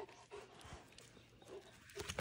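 Near silence with faint sounds from Cane Corso dogs right by the microphone: a few soft, short noises.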